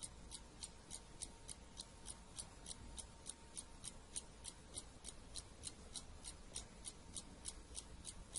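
Faint, regular ticking of a clock, about three ticks a second.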